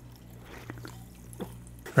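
Someone drinking from a drink can: quiet sips and a few faint swallows over a low steady room hum.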